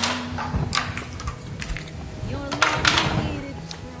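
Indistinct voices over background music, with a few faint clicks.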